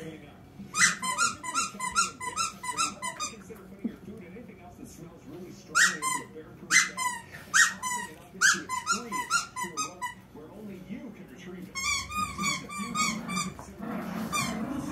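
A squeaky dog toy squeaking as small dogs bite and tug at it: several runs of quick, short squeaks about five a second, with a few longer, separate squeaks in the middle.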